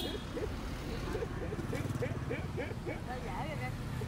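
Indistinct voices talking over the steady low rumble of street traffic.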